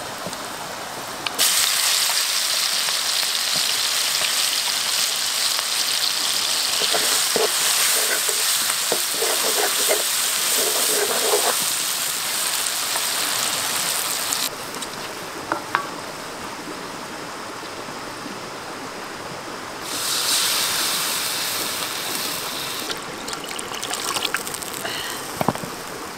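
Hot oil sizzling in a wok as spices, star anise and dried red chillies fry in it. The sizzle jumps up sharply about a second and a half in, drops to a softer level around halfway, and rises again near the end.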